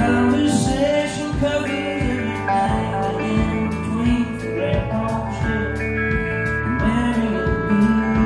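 Live country band: a man singing over strummed acoustic guitar, electric bass and a steady drum beat.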